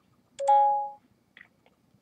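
Samsung Galaxy Note 5 camera app playing a short electronic chime through the phone's speaker as a six-second video collage segment finishes recording, followed by a couple of faint touchscreen taps.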